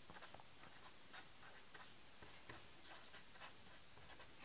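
A pen scratching on paper in a run of short, faint strokes as digits, fraction bars and plus and minus signs are written.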